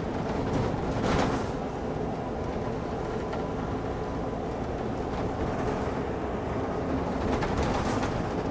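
City bus driving, heard from inside the cabin: steady engine and road rumble, with a brief rattle about a second in.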